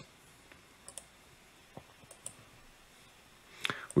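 A handful of faint, scattered computer mouse clicks.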